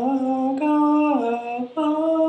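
A single voice chanting in long, held notes. The pitch steps down about a second in, and the tone breaks off briefly twice before starting again.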